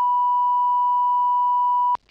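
Steady 1 kHz line-up test tone on the meeting room's sound feed during a broadcast break: a single loud, unwavering pitch that cuts off sharply just before the end.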